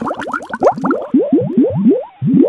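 Cartoon bubble sound effect: a rapid, overlapping string of short rising bloops, several a second.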